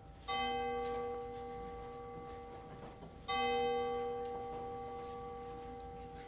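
Church bell tolling: two strikes about three seconds apart, each ringing on and slowly dying away.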